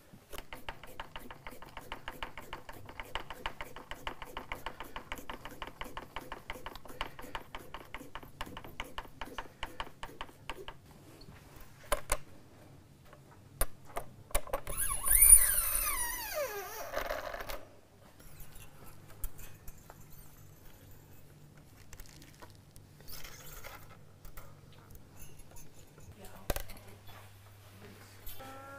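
Small metallic clicks and taps of electric-guitar hardware and strings being fitted. A fast run of ticks fills the first ten seconds or so. About fifteen seconds in comes a louder scraping zing that falls in pitch, then scattered light taps.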